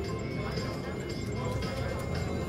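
Casino floor ambience: a steady wash of background chatter and slot machine noise, with short electronic tones from a video poker machine as a hand is dealt.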